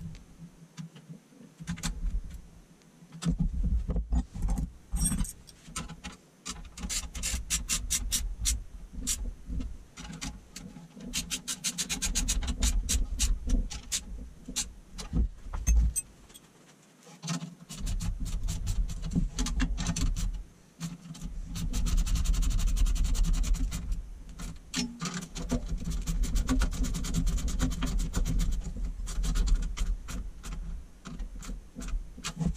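Ratcheting wrench clicking in quick runs as nuts are tightened, with knocks and rattles from handling the metal frame; the clicking stops for a second or two several times, longest about two-thirds of the way through.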